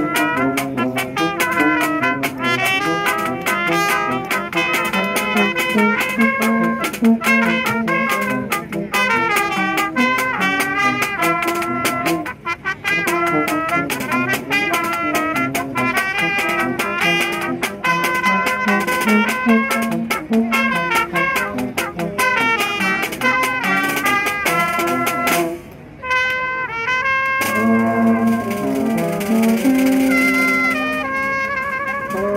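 Small street brass band playing a tune: tuba and baritone horn underneath trumpets, clarinet and saxophone, with a snare drum keeping a steady beat. The band stops briefly about 26 seconds in, then starts up again.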